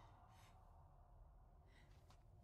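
Near silence, broken by a woman's faint breaths: one short breath about half a second in and another near the end.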